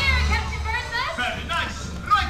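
Children's high voices calling out and chattering in a crowd, with loudspeaker music dropping back at the start and carrying on low beneath them.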